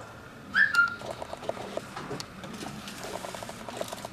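Epson L3110 ink-tank printer starting up after being switched on: a faint, uneven run of small mechanical clicks and whirring from about a second in, its print mechanism initialising. About half a second in, a brief rising whistle-like chirp is the loudest sound.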